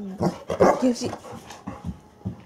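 A person laughing, together with brief vocal sounds from a Bernese mountain dog. The loudest part comes about half a second to a second in, then it dies away.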